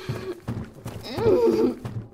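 A woman's wordless voice acting, a pitched vocal burst that rises and falls about a second in.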